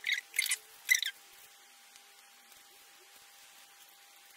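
Plastic packaging of an eyeliner pencil being worked at by hand, crinkling and squeaking in three short bursts within the first second, as it resists being opened. Then near silence with a faint steady hum.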